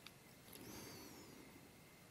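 Near silence: faint room tone, with a faint high, brief whistle-like glide just under a second in.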